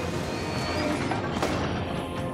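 An alarm blaring steadily: a harsh, continuous sound with a few held tones over a dense, noisy rumble.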